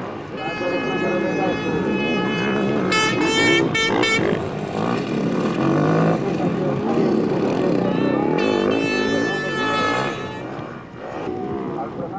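Enduro motorcycle engines revving as riders race over a muddy motocross track, the engine note held high with two warbling stretches. Voices can be heard underneath.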